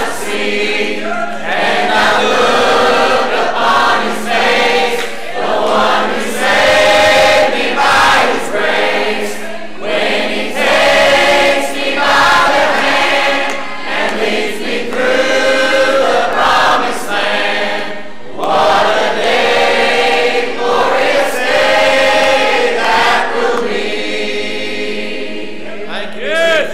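Church choir singing a slow gospel song in held phrases of a second or two, with short breaks between them.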